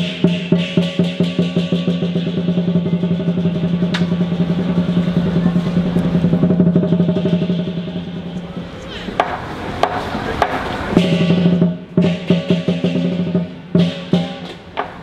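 Chinese lion dance percussion: the big lion drum beaten in a fast roll with cymbals and gong ringing along. Around nine to eleven seconds in the drumming thins into a looser clash of cymbals, then the beat picks up again.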